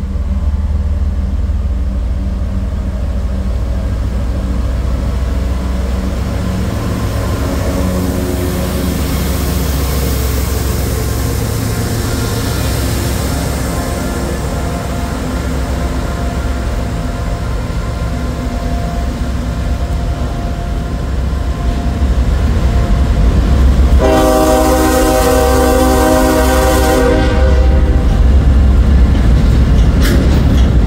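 A GE ES40DC diesel locomotive's V12 engine and a freight train's wheels rumbling steadily as the train passes at close range, the sound growing louder after about twenty seconds. About 24 seconds in, the locomotive's air horn sounds a chord for about three seconds.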